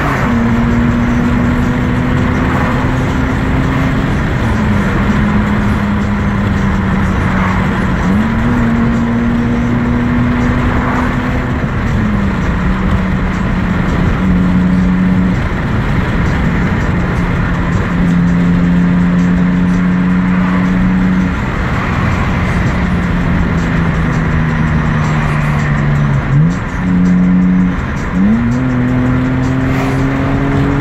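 Car engine heard from inside the cabin during a hard run, a loud drone that holds its pitch, drops and sweeps back up several times as gears change, with two quick rises in revs near the end.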